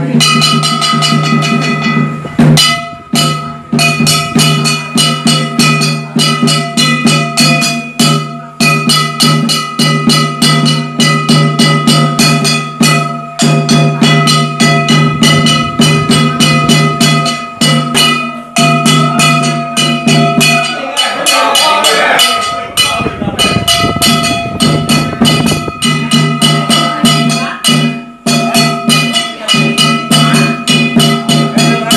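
Dao ritual percussion music: drum and ringing metal percussion struck in a fast, steady rhythm, several strokes a second, with sustained metallic tones throughout. The rhythm loosens briefly about two-thirds of the way through.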